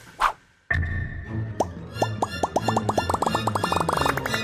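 Cartoon soundtrack: a short blip, a brief silence, then music with a low pulsing beat and a steady high note. Over it runs a series of quick rising plop effects that come faster and faster.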